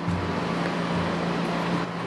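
Steady rushing noise over a low, even hum, with no distinct knocks or clicks.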